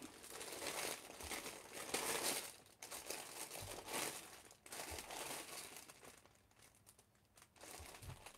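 Faint rustling and crinkling from rummaging through hair accessories, in several short bursts, quieting for the last couple of seconds.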